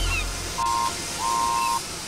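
Steam engine whistle sound effect giving two toots on one steady note, a short one followed by a longer one, over a faint hiss.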